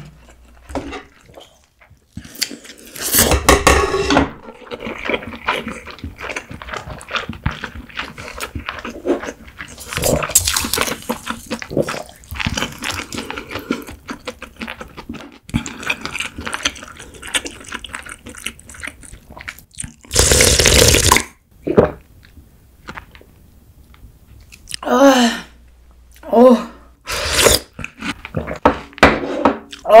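Close-miked eating of cold naengmyeon: three loud slurps of noodles and broth, about three, ten and twenty seconds in, with chewing and wet mouth clicks between them. Near the end come two short hums.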